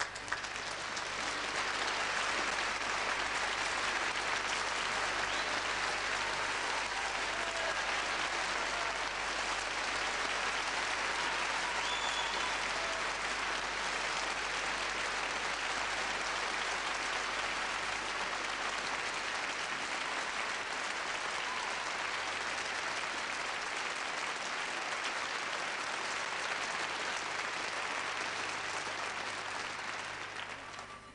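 Large concert-hall audience applauding steadily as a soloist comes on stage, swelling over the first couple of seconds and starting to fade near the end.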